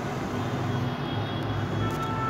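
Steady low background rumble with a few faint high tones above it.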